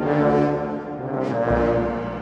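A wind band playing a slow Maltese funeral march (marċ funebri): held brass chords from horns and trombones, with the lower brass coming in on a new chord about a second and a half in.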